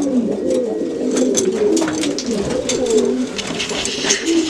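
Domestic pigeons cooing in a loft, several low, wavering coos overlapping without a break, with faint clicks among them.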